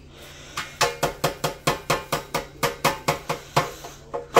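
Rapid knocking of a small container against a stainless steel sink, about five sharp raps a second starting just after half a second in, to knock used coffee grounds out of it.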